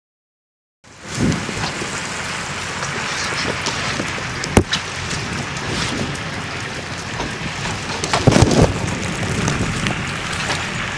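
Steady rain hiss that cuts in abruptly about a second in. A single sharp click comes about four and a half seconds in, and there are low rumbles, the loudest about eight and a half seconds in.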